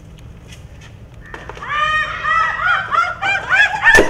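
Several women shrieking in short, overlapping high cries that start a little over a second in, as they slip and fall into a pile of cow dung. A thud of the fall comes near the end.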